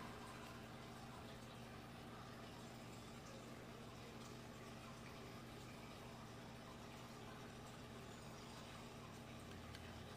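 Near silence: the faint steady hum and trickle of water from a running aquarium.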